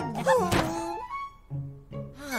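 Cartoon sound effect: a falling tone leads into a single thunk about half a second in. After the thunk, background music with sustained notes carries on.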